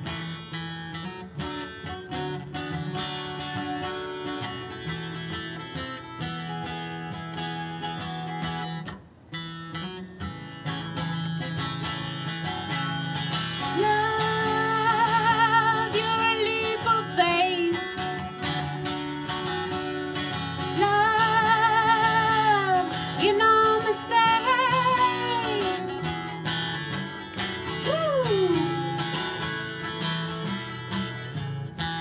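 A woman singing a folk song to her own acoustic guitar. The guitar plays alone for roughly the first dozen seconds, then her voice comes in with long, held notes with vibrato, ending a phrase with a falling slide near the end.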